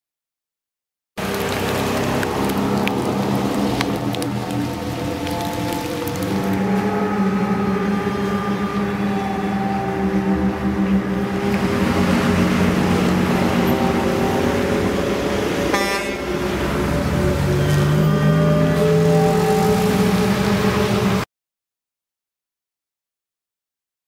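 Traffic jam: several vehicle horns honking, some blasts held for seconds at different pitches, over engine and road noise. It cuts off suddenly near the end.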